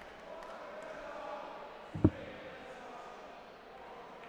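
A single dart thudding into a bristle dartboard about two seconds in, a short sharp knock, over the low murmur of a large indoor crowd.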